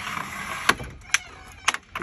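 Caravan awning's telescopic support arm released by its trigger handle and sliding down: a scraping slide, then four sharp clicks as it pops down into place.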